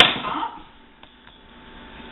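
A woman's voice finishing a word, then a quiet stretch with two faint, light clicks about a second in, from cooking utensils being handled.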